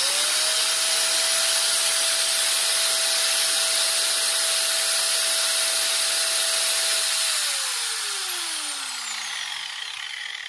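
An electric power tool's motor spins up to full speed at once and runs steadily at one high pitch. About seven seconds in it is switched off and winds down, its whine falling steadily in pitch and fading.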